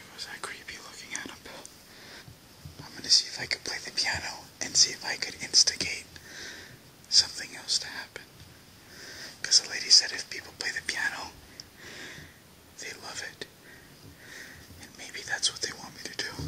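A person whispering in short phrases with brief pauses between them, a voiceless, hissy voice with no spoken pitch.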